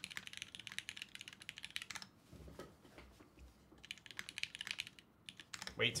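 Fast typing on a 60% mechanical keyboard with Cherry MX Black switches in an aluminum case: dense runs of crisp key clacks, easing off for about two seconds in the middle.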